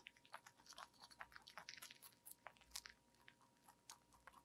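Rabbit chewing and biting fresh leafy greens close to the microphone: rapid, faint, crisp crunches, several a second.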